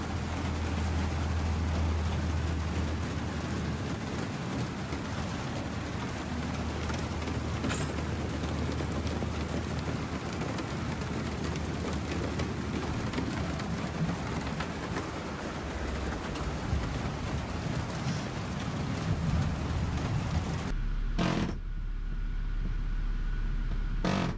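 Pneumatic air chisel with a pointed bit hammering rapidly against the steel ceiling panels of a school bus, punching out the centres of the rivets. The hammering runs on without a break, then stops about three seconds before the end, leaving a low hum.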